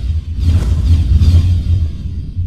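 Cinematic logo-intro sound design: a deep, steady low rumble with airy whooshes swelling over it, one about half a second in and another past the one-second mark.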